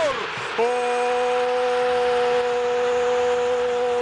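A male Arabic football commentator's long held goal cry. After a short falling shout, one sustained note starts about half a second in and is held for over three seconds, over the steady noise of a stadium crowd.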